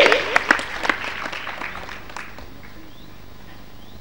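Audience clapping, starting loud as the talk pauses and thinning out over about two seconds until only a faint background remains.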